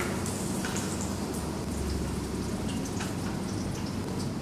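Hot cooking oil sizzling in a saucepan as food fries, a steady crackle with many small scattered pops.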